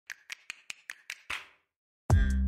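A quick run of seven sharp, snap-like clicks, evenly spaced at about five a second, the last one a little fuller with a short fading tail.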